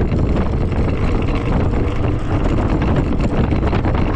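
Steady wind rush on the microphone mixed with low road rumble from an MS Energy X10 electric scooter riding along at speed.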